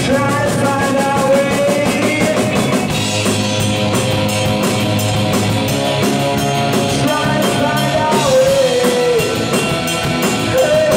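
Indie rock band playing live: electric guitar, bass guitar and drum kit, with a man singing over them. A steady cymbal beat comes in about three seconds in.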